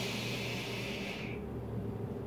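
Hiss of a long draw on a Geekvape Athena squonk vape, air pulled through the atomizer while the coil fires, cutting off about 1.4 s in.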